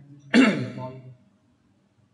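A man clearing his throat once: a sudden, loud burst about a third of a second in that falls in pitch and dies away within a second.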